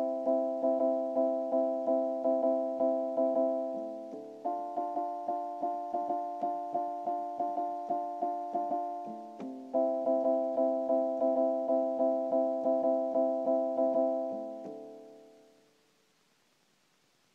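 Keyboard synthesizer with a piano-like sound playing held chords, with a quick repeated-note pattern of about three notes a second over them. The chord changes twice, then the last chord fades away near the end.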